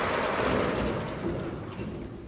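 A vertical sliding whiteboard panel being pushed along its track: a steady rumbling scrape that fades over the couple of seconds it moves.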